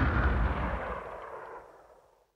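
Tail of an outro sound effect: a rumbling, boom-like noise dying away steadily and fading out to silence at the end.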